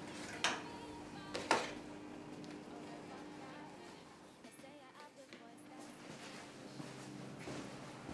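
Two sharp clicks about half a second and a second and a half in, then quiet room tone with a faint steady hum.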